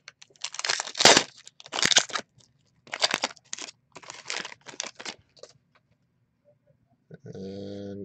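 Trading-card pack wrappers being torn and crinkled, with the cards handled, in a series of short rustling bursts that are loudest about a second in.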